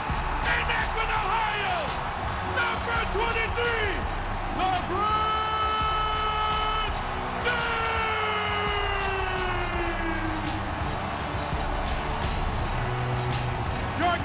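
Arena PA announcer's drawn-out introduction call over music and a cheering crowd: a long call held level for about two seconds, then a second long call that falls steadily in pitch.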